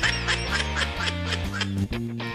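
Playful background music with a bouncy bass line and a steady beat.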